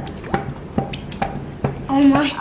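A plastic squeeze bottle of contact lens solution pumped over shaving cream: about five short wet squirts in a steady rhythm, a little more than two a second. A voice starts near the end.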